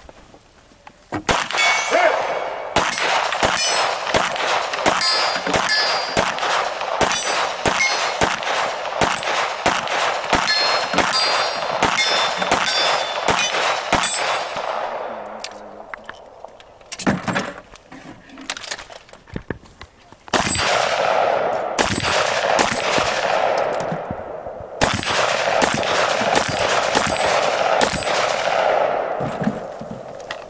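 Competition gunfire with steel targets clanging and ringing as they are hit: a steady string of shots, about two a second, starting about a second in, a few scattered shots mid-way, then two long strings of very rapid fire near the end.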